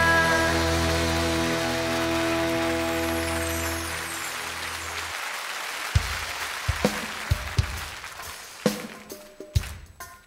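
A live band's final held chord fading out, the singer's last held note ending just after the start, with audience applause rising over it and then dying away. From about six seconds in, a series of sparse, sharp low beats starts the next song.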